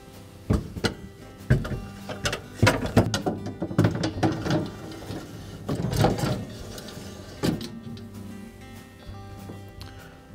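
Background music with a steady pitched bed, over irregular clatters and knocks of wire freezer shelves and baskets being set into a side-by-side refrigerator.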